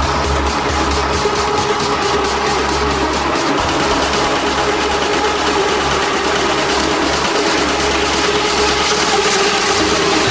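Uplifting trance track: a steady beat with fast hi-hat ticks over sustained synth tones and a heavy bass. The hi-hats fade out about a third of the way in, leaving the held synths, and a rising noise sweep builds near the end.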